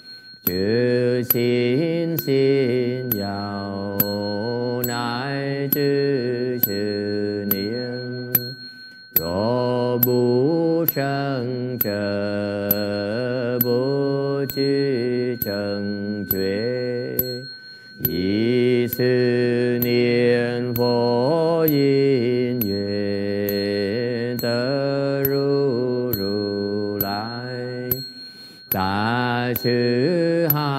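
Slow Chinese Buddhist liturgical chanting in long held phrases, broken by short pauses for breath about a third and two-thirds of the way through and near the end. A steady beat of sharp knocks from a wooden fish keeps time under the voice, and a thin steady high tone runs throughout.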